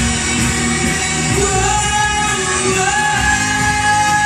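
A man singing into a microphone over accompanying music, amplified through the room's speakers, with long held notes near the end.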